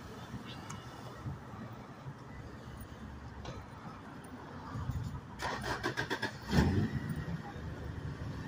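Parking-lot ambience: a steady low rumble of traffic and car engines, with a quick run of crackling clicks about five and a half seconds in, then a louder low rumble about a second later.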